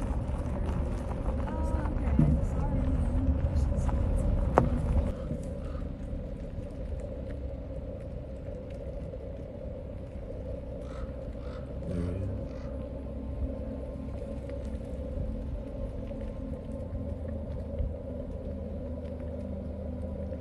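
Car moving slowly, its engine and tyre rumble heard from inside the cabin. It is louder for the first five seconds, then settles to a quieter, steady hum.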